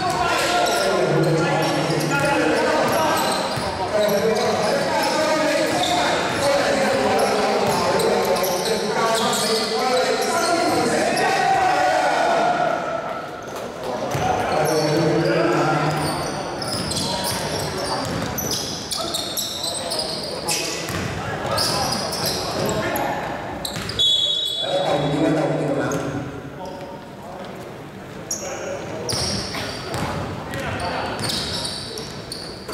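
A basketball being dribbled and bounced on a wooden gym floor during play, the knocks echoing in a large hall, over indistinct voices of players and spectators.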